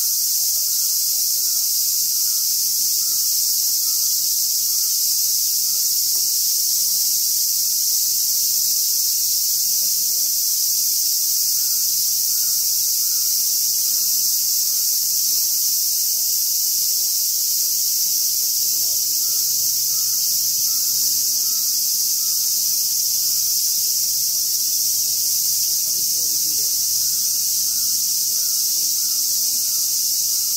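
Steady high-pitched insect chorus with no break in it. Faint short chirping calls repeat behind it.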